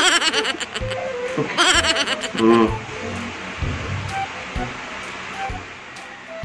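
A person laughing in two quick bursts, then a short drawn-out vocal sound at about two and a half seconds. After that, soft background music with scattered single notes.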